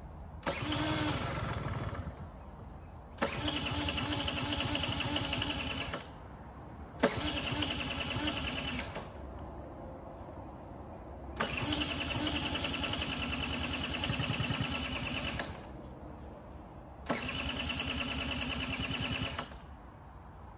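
A 1986 Honda Gyro scooter's electric starter cranking the engine in five bursts of two to four seconds each, each stopping suddenly, with the engine not catching between tries: a hard start after long storage.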